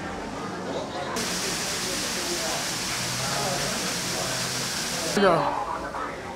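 A hiss from the ride queue's effects, like venting steam or fog, starts suddenly about a second in and cuts off sharply about four seconds later. A short rising sweep follows near the end and is the loudest sound.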